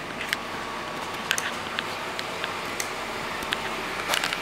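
Scattered light clicks and scuffs at uneven intervals over a steady background hum: footsteps on concrete and handling of a handheld camera.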